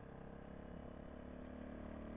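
Big Boy TSR 250's single-cylinder engine chugging along steadily at cruising speed, faint through a quiet stock exhaust.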